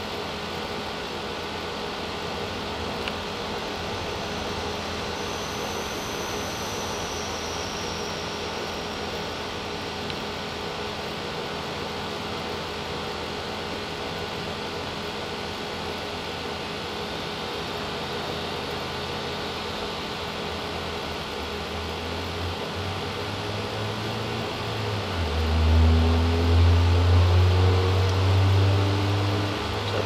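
Steady mechanical hum with several constant whirring tones. Near the end a louder low rumble comes in, its tones climbing in steps.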